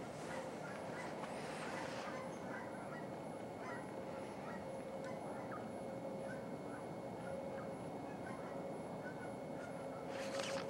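A distant flock of waterfowl calling: many short calls scattered throughout, over a steady background rush.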